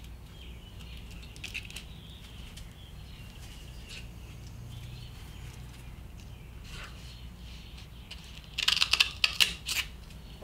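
Scissors cutting through gritty, sandpaper-like non-slip grip tape, a quick run of sharp snips near the end. A faint steady low hum lies under the quieter stretch before it.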